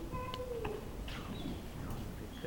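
Children's high voices in a hall: one drawn-out call that slides down and stops about two-thirds of a second in, then a few shorter swooping calls.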